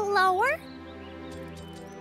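A cartoon creature-like call, held on one pitch and then sweeping sharply upward before cutting off about half a second in, followed by steady background music.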